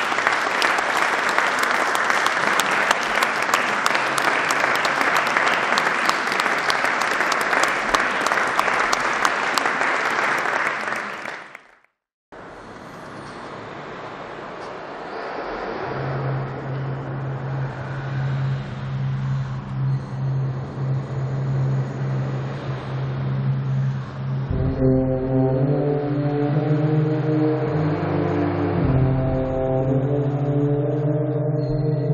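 Audience applause that stops abruptly just before the middle. After a short gap, a wind band starts slowly with a long, low held note from the tubas and low brass, and higher brass join in sustained chords in the last few seconds.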